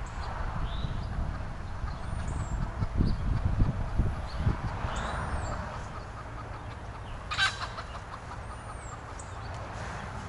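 A chicken clucking, with a sharper call about seven seconds in. A small bird gives a short high chirp about every two seconds, over a low rumble on the microphone that is heaviest around three to four seconds in.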